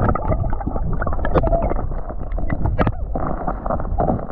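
River water gurgling and churning around an action camera held underwater, heard muffled with a heavy low rumble and scattered small clicks of bubbles, while a trout is being released.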